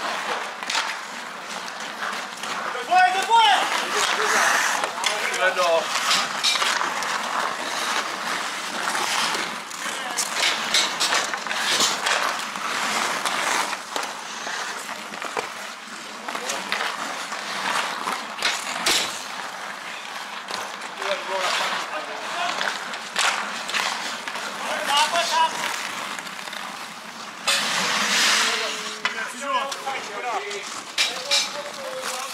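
Ice skate blades scraping and carving on the ice throughout, with sharp clicks and knocks of hockey sticks on the puck and ice. Players' voices call out briefly a few times, about three seconds in, near 25 seconds and near the end.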